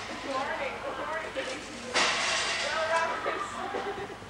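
Indistinct voices of people talking in the background, no clear words. About two seconds in, the sound jumps louder with added hiss.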